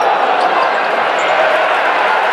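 Steady crowd chatter in a basketball arena, with a basketball being dribbled on the hardwood court during live play.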